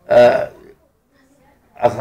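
A man's voice: one short, loud voiced sound in the first half-second, a pause of about a second, then his voice starts again near the end.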